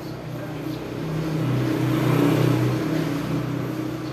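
A motor vehicle's engine passing by, its steady hum growing louder to a peak a little past two seconds in and then fading.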